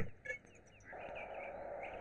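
Faint outdoor ambience beginning about a second in: a steady hiss with small birds chirping lightly over it.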